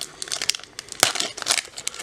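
Crinkling and crackling as a just-opened pack of Panini Select football cards is handled, with one sharper click about a second in.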